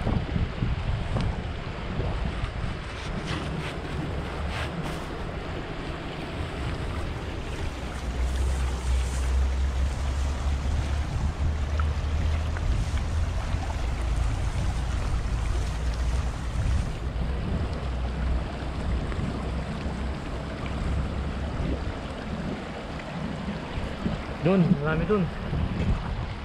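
Shallow river water rushing over rocks in a steady wash, with wind buffeting the microphone in a heavy low rumble through the middle. Splashing of a wader hauling a cast net through the current.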